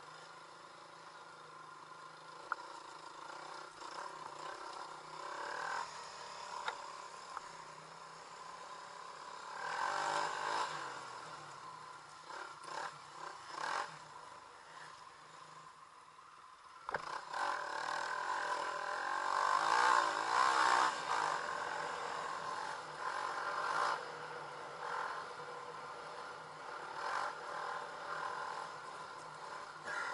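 Dirt bike engine running while riding along a sandy trail, swelling louder briefly about ten seconds in, then stepping up sharply at about seventeen seconds and staying louder.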